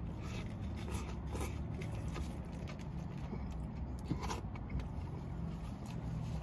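Close-up chewing of a Whopper burger: a bite, then wet mouth sounds and small crunches scattered through, over a steady low hum.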